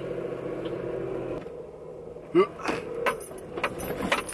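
Handling noises inside a parked car: a steady hum stops about a second and a half in, then a short squeak and a run of clicks and light rattles.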